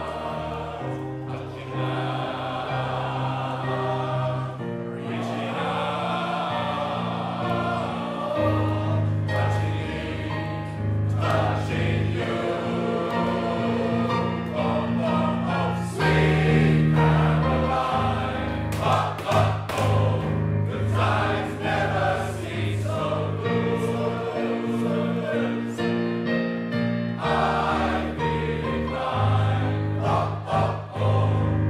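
A male voice choir singing a song in sustained multi-part harmony, getting louder about halfway through.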